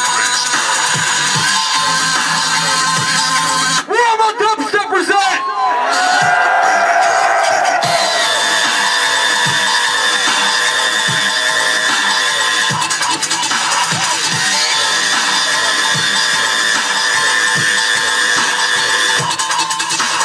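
Electronic dance music from a DJ set played loud over a concert sound system, a steady beat under sustained synth tones. About four seconds in, the bass drops out for about two seconds beneath warbling, pitch-bending sounds, then the beat returns.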